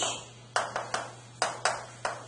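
Chalk tapping against a blackboard as it writes: four sharp taps, two close together about half a second in and two more about a second later, over a steady low hum.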